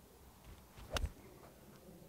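A seven-iron striking a golf ball off fairway turf: one short, crisp strike about a second in, the shot taking a divot.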